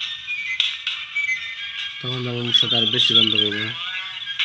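A man's low voice singing a short phrase of held notes in the second half, after a pause of about two seconds. Faint high chirping and twittering runs underneath throughout.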